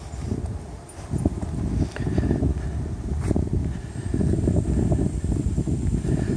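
Wind buffeting the microphone outdoors: an uneven, fluttering low rumble.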